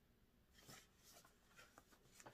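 Near silence with faint, scattered rustling and scraping from a cardboard product box being handled, starting about half a second in.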